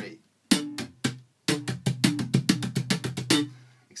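Electric bass guitar played slap style: three separate slapped notes, then a fast run of about two seconds of percussive strikes over a ringing low note. The run is the slap triplet figure of pluck, left-hand muted hit, tap and a hammer-on from D to E.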